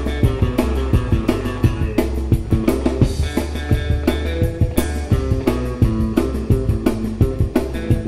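Live rock and roll band playing an instrumental break: hollow-body electric guitars over a drum kit keeping a steady beat.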